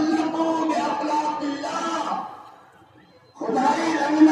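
A man's voice in long, drawn-out held phrases, breaking off for about a second just past the middle before going on.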